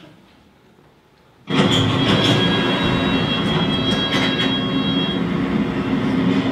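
Recorded sound of a London Underground train, played as the dance soundtrack: quiet at first, then about a second and a half in the train's running noise starts abruptly and goes on loud and steady, with a high whine held over it for a few seconds.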